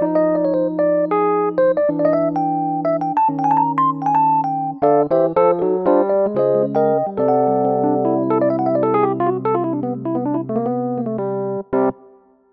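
Piano tone from a digital keyboard playing a jazz ending in C major: chords step down chromatically (F♯m7♭5, Fm7, Em7, E♭m7, Dm7, then D♭ major) with a varied melody moving over them. It settles on a long held C major chord with melody notes over it, and the playing stops about a second before the end.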